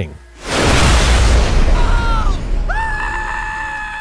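Explosion sound effect: a sudden loud blast with a deep rumble that dies away over about two seconds. A short falling cry and then a long, held high scream follow, the scream bending down at the end.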